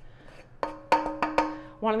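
A plastic scraper knocking and scraping against a hard mixing bowl as dough is worked out of it: about five sharp knocks in quick succession. The bowl rings with a steady tone after them.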